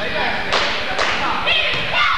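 A basketball bouncing on a hardwood gym floor: two sharp thuds about half a second apart, each ringing briefly in the hall.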